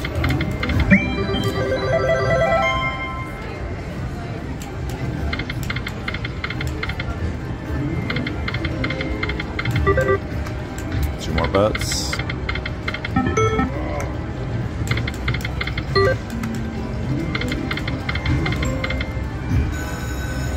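Ainsworth Temple Riches slot machine playing its electronic reel-spin tones and short chiming jingles spin after spin, including a falling run of tones early on. A steady casino din of voices runs underneath.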